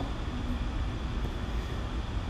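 Steady low hum and faint hiss of background noise, with no distinct event.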